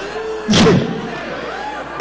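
A sudden loud thud about half a second in, joined by a short shout, in a hall with a crowd. A laugh comes near the end.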